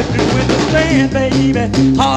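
Upbeat northern soul record playing, with drums, guitar and a walking bass line on a steady beat.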